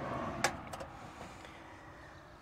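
A sharp click as the latch of a travel trailer's exterior water-heater access door is released and the door swings open, followed by a few faint ticks.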